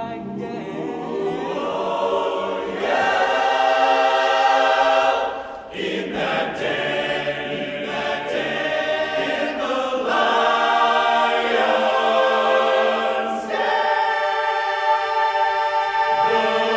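Men's a cappella chorus singing held chords in full harmony, with a brief break between phrases a little over five seconds in.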